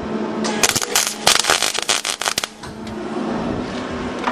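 A 120-amp electric welder crackling in a run of short bursts from about half a second to two and a half seconds in, tack-welding overlapped pieces of a sheet-metal pan together in a few spots.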